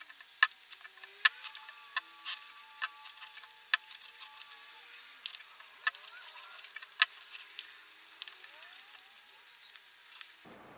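Irregular light clicks and taps, a couple a second, of a small clear plastic coin tube being handled on a wooden tabletop as cotton balls coated in petroleum jelly are pressed down into it with a finger.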